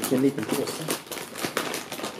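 Plastic snack bag of Cheez Doodles crinkling as a hand rummages inside it for puffs, a run of irregular crackles.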